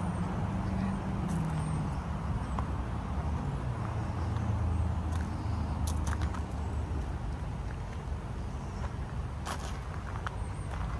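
A low, steady rumble of motor traffic, with a few short clicks.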